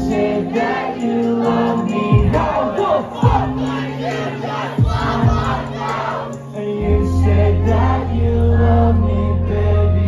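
Live music played loud through a club's sound system, heard from within the audience, with crowd voices mixed in. A heavy deep bass comes in about seven seconds in.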